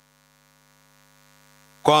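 Faint steady electrical mains hum from the microphone and sound system during a pause in speech. A man's voice starts speaking near the end.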